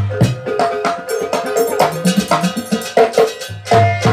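Live Javanese gamelan-style dance accompaniment: fast, dense percussion with deep drum beats and clicking strokes under ringing metal notes held at a few steady pitches. The deepest beats fall at the start and again near the end.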